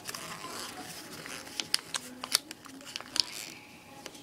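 Sheet of paper rustling and crinkling as it is folded and creased by hand, with several short sharp clicks in the second half.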